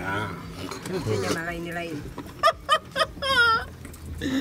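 Several people talking, with a high-pitched wavering voice a little after three seconds in and a few sharp clicks just before it.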